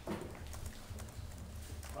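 Footsteps on a hard floor as a person walks across a meeting room, with faint clicks and paper handling.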